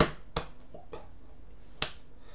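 Sharp slaps of a signer's hands, against his chest and against each other, while he signs in Spanish Sign Language. There are three crisp hits: the loudest right at the start, a lighter one just after, and another strong one near the end.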